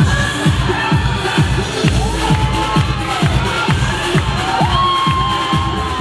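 Electronic dance music with a steady kick-drum beat, about two to three beats a second, with crowd noise underneath.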